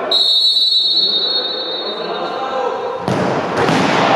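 Referee's whistle blown in one long steady blast that fades after about two and a half seconds, over players' voices in a sports hall. About three seconds in, a sudden loud burst of noise breaks in.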